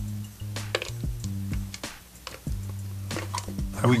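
Background music with held low bass notes, over light, irregular clicks and knocks of hard plastic parts as a handheld vacuum's clear dust cup and filter are handled and pulled apart.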